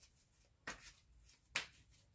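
Tarot cards handled and shuffled in the hands: two brief card clicks, a soft one about two-thirds of a second in and a sharper one about a second and a half in.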